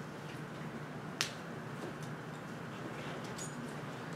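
Room tone with a steady low hum, a single sharp click a little over a second in, and a few faint ticks.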